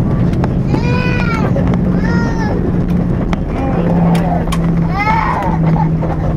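Cabin noise inside a four-engined Airbus A340-300 rolling along the runway just after landing: a loud, steady low rumble of the wheels and airframe with a steady engine hum. Brief high-pitched voice calls, like a small child's, sound over it about every second or two.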